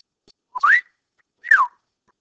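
A person whistling two short notes: the first glides up, and the second, about a second later, glides back down.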